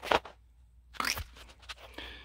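A few short knocks and rustles of handling, among them a hand slapping a bare forearm to kill a mosquito.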